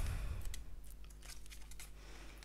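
Faint rustling and a few light clicks of a tarot card deck being handled.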